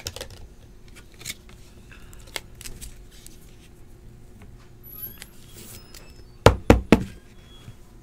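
Clear hard-plastic trading-card holder being handled, with faint light ticks, then a quick run of about four sharp clicks about six and a half seconds in as the card is put into it and the case is closed.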